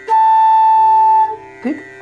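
Bamboo bansuri flute blowing one steady held note for about a second, then stopping. It is the note Dha of the sargam, fingered by opening the bottom finger hole from the all-closed Pa position.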